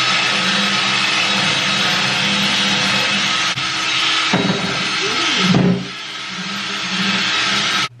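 Cordless drill running a spinning nylon drill-brush attachment that scrubs a bathtub's surface, a steady motor whir with bristle scrubbing noise. It eases off and changes pitch briefly about halfway through, then stops abruptly just before the end.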